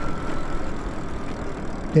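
Ride noise of an electric fat-tyre bike slowing on wet pavement: tyre hiss and wind on the microphone, with a faint steady high whine fading out in the first second.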